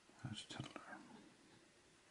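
A single soft whispered word, with the faint scratch of a pen writing on paper.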